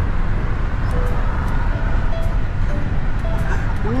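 Steady road and engine rumble inside a moving car, heard from the back seat while driving along a road.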